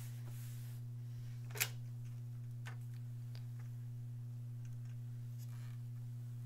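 Faint handling sounds of cotton fabric being smoothed by hand and an iron brought onto a wool pressing mat, with one short, sharp sound about a second and a half in and a few faint ticks later, over a steady low hum.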